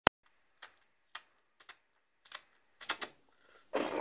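A series of small, sharp clicks at an uneven pace, a couple a second, then a short breathy burst near the end as a woman starts to laugh into her hand.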